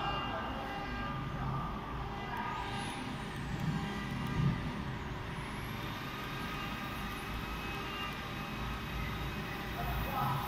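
Steady machine hum from a CNC router workshop, with several held tones. A faint high whine glides up and down a few seconds in, then holds level, as the router's axes are jogged into place to set the zero point.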